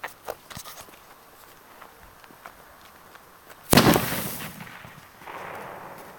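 A firework going off: a few faint pops, then one loud bang a little under four seconds in that trails away over about a second. A softer rushing sound follows near the end.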